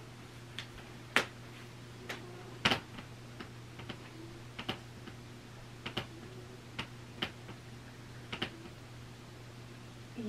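A faint scattering of light, irregularly spaced clicks and taps from a person moving through squats, over a steady low electrical hum.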